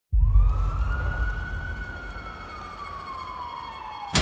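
A deep low boom starts suddenly, with one siren-like wail over it that rises briefly and then falls slowly as the whole sound fades, in the manner of trailer sound design.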